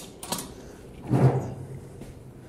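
Cast iron Dutch oven hooked by its bail and lifted off a bed of coals: a light metal click, then a louder scraping clunk about a second in.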